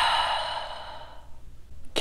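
A man's long, breathy exhale after downing a shot of soju, loudest at the start and fading out over about a second.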